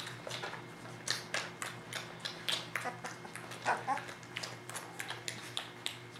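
Newborn Weimaraner puppies giving short, irregular squeaks and whimpers, one more drawn-out cry a little past the middle, over a steady low hum.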